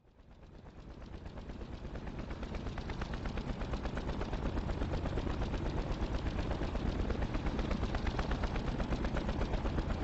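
Helicopter rotor: a rapid, steady thudding that fades in from silence and grows louder.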